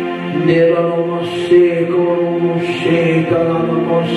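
Slow devotional music with sustained chords, and a man's voice chanting over it in phrases.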